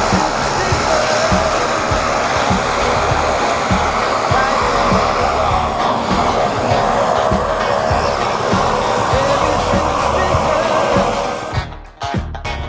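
Steady, loud rushing noise with faint music under it.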